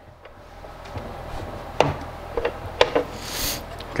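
Wooden drawer being slid and handled: a rubbing wood-on-wood slide with a few light wooden knocks, and a short scrape near the end.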